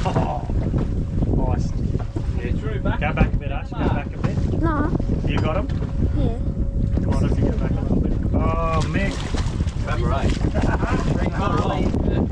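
Wind buffeting the microphone on an open boat at sea, a steady low rumble, with brief low mumbled voices over it.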